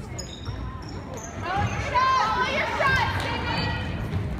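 Gym crowd and court noise during a basketball game: spectators calling out loudly through the middle, with a few short high sneaker squeaks on the hardwood floor and a basketball bouncing.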